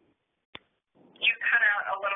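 A single sharp click, then from a little past the middle a pitched, wavering vocal sound lasting about a second and a half, heard through a telephone-quality call line.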